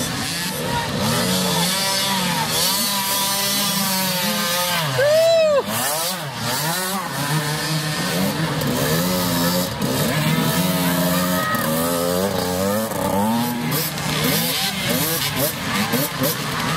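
Several small mini dirt bike engines running and revving unevenly as young riders struggle through thick mud, with one loud rev that rises and falls about five seconds in. Spectators' voices run over them.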